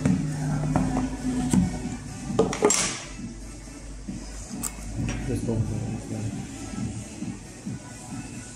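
Smartphone box being handled over a background song: small taps and clicks, and a short sliding rustle about two and a half seconds in as the lid comes off the box.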